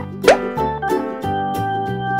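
Cheerful children's background music, with a short cartoon 'plop' sound effect that slides quickly upward in pitch about a quarter second in, the loudest moment.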